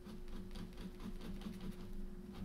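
Ink pen scratching on paper in quick, short hatching strokes, faint.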